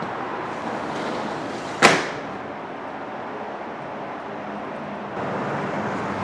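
A metal-framed sliding window slammed shut, one sharp bang about two seconds in.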